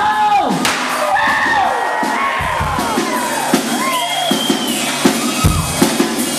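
Live country band playing an instrumental passage: a lead line of bending, gliding notes over the band, with regular drum hits coming in about halfway through.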